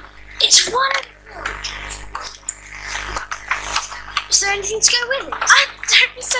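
Film soundtrack of children and adults exclaiming in short bursts, with rustling and handling of a present's box and wrapping between the voices.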